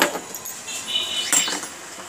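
Light metallic clinks and knocks as a sewing machine's metal parts and tin accessory box are handled on a table: a sharp knock at the start and another about a second and a half in, with a brief high ringing between.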